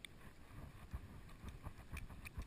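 Pool water lapping and splashing faintly against a GoPro held at the water's surface: scattered soft knocks and ticks over a low muffled rumble.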